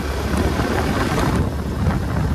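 Wind rumbling on the microphone of a motorcycle ridden at about 50 km/h, with the bike's running and road noise underneath.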